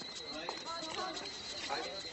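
Quiet voices with a few footsteps on paving.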